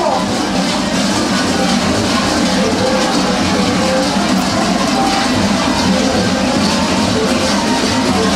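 Dense, steady clanging and jangling of many large kukeri bells, worn on the dancers' belts and shaken as a whole group moves in step.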